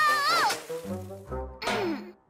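Cartoon soundtrack: a kitten's strained cry of effort breaks off about half a second in as the snow shovel flies out of his paws. Playful music and comic sound effects follow, including a falling pitch glide near the end.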